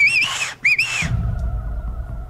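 A man gives a loud whistle through his fingers, two blasts with a wavering pitch, as a signal to call his gang. About halfway through, a low rumble comes in.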